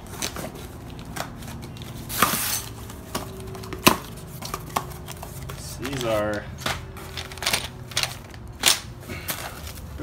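A small cardboard box cut open with a folding knife and parts pulled out of their wrapping: cardboard tearing and rustling with scattered sharp clicks and knocks, the sharpest just before four seconds in. A short voiced sound about six seconds in.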